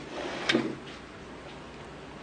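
A single short knock about half a second in, of something being shut, with a fainter click at the start.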